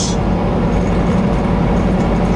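Steady engine and road noise inside a truck cab at highway speed: an even, low drone with a faint steady hum.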